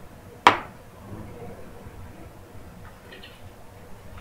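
A single sharp knock about half a second in, with a brief ring after it, over faint room noise.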